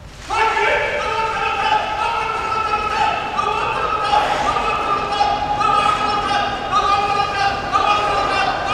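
Sumo referee's high, drawn-out calls of "nokotta" repeated without a break while the wrestlers grapple, starting just after the initial charge and echoing in a large hall.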